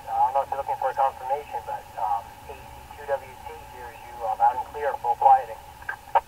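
Another amateur radio operator's voice coming in over the repeater through the Yaesu FTM-400XDR mobile radio's speaker: narrow FM voice audio with the lows and highs cut off.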